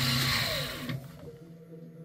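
Milling machine spindle motor, a 1200 W unit on a BT30 headstock, running steadily with a hum and hiss, then switched off about a second in, its pitch falling as it winds down; a faint steady hum remains afterwards.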